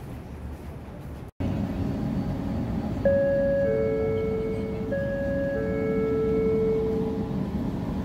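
Inside a crowded LRT train car, the train runs with a steady low rumble. About three seconds in, a two-note chime (a high note, then a lower held one) sounds twice in a row, the kind of chime that comes before an onboard announcement or the doors. Before that, the first second or so holds outdoor walkway noise that cuts off suddenly.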